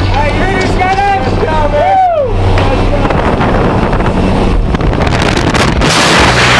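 Jump plane's engine droning and wind rushing past the open door as a tandem pair exits. Voices shout over it in the first two seconds, one cry sliding sharply down in pitch, then only the engine and the wind.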